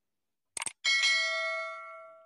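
A quick mouse-click sound effect, then a bright bell chime that rings on and fades away over about a second and a half: the stock click-and-bell sounds of a subscribe-button animation.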